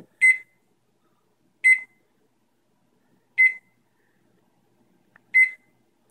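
GE microwave's control-panel beeper sounding four short, high beeps at uneven gaps of about one and a half to two seconds, one for each press of its keypad buttons.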